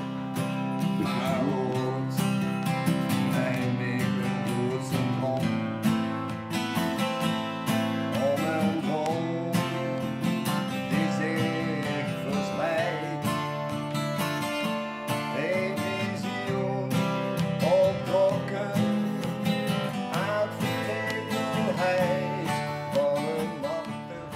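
Two acoustic guitars playing an instrumental passage: strummed chords with a picked melody line over them.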